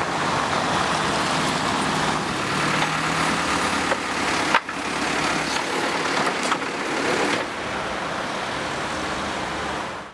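Road traffic and heavy construction machinery at a street works site: a steady engine drone under passing-car noise. The sound shifts abruptly about halfway through and again about three-quarters of the way in.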